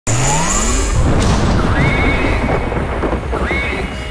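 Synthesized sci-fi soundtrack: rising electronic sweeps in the first second and tones that rise and then hold, over a deep pulsing rumble.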